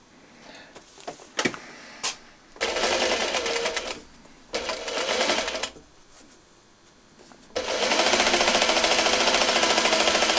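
Juki domestic sewing machine stitching fabric strips in three runs: two short runs of about a second each, then a longer steady run starting about three-quarters of the way in. A couple of light clicks come before the first run.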